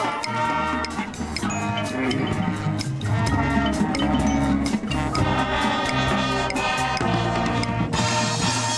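High school marching band playing: sustained brass notes over front-ensemble mallet percussion and drum kit, with frequent sharp percussion strikes.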